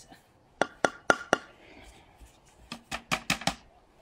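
Repeated sharp knocking: four knocks starting about half a second in, then a pause and a quicker run of about five knocks near the end.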